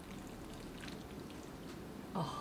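Chopsticks stirring sticky, sauce-coated udon noodles in a bowl, working a runny egg yolk through them: faint wet squishes with scattered light ticks.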